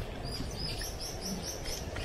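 A small bird singing a quick run of about seven high, similar chirps, some four a second, over a steady low rumble.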